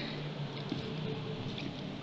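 Steady, faint background noise with a low hum in a pause between words: room tone.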